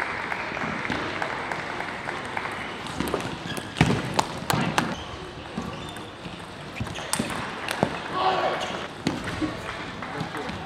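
Table tennis rally: sharp clicks of the celluloid-type ball struck by rackets and bouncing on the table, coming in quick clusters in the middle and again near the end, over the murmur of a large hall.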